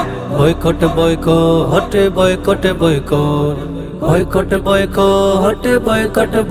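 Male voices singing a Bengali nasheed in harmony over a steady beat, with a low bass drone under the first four seconds.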